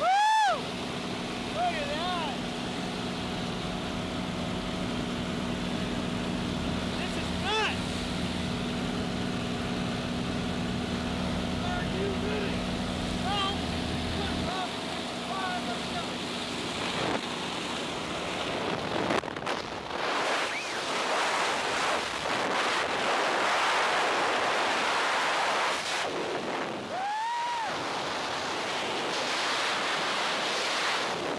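Steady drone of the jump plane's engine with wind at the open door, which cuts off about fourteen seconds in as the tandem pair exits. It gives way to loud, rushing freefall wind on the camera microphone.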